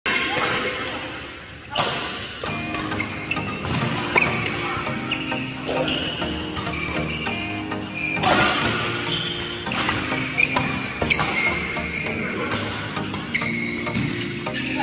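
Badminton doubles rally in an indoor hall: sharp strikes of rackets on the shuttlecock at irregular intervals, with short high squeaks of court shoes, over music and voices.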